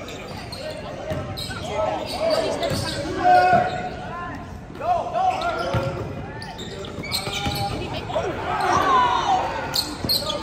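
Basketball game on a hardwood gym court: sneakers squeaking and the ball bouncing, with players' voices, all echoing in a large hall.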